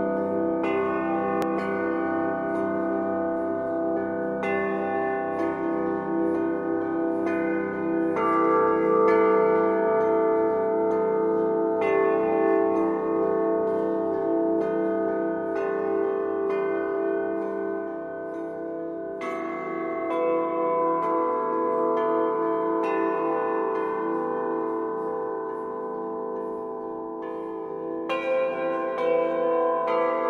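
Bells ringing slowly, a new stroke every one to four seconds with each note ringing on under the next.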